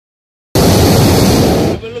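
Hot air balloon's propane burner firing: a loud, steady blast that starts about half a second in and cuts off suddenly after just over a second.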